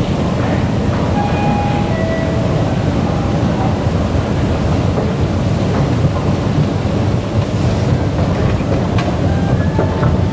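Steady, loud low rumble of a running escalator in an underground MRT station, with a few brief faint tones about one to two seconds in and light clicks near the end.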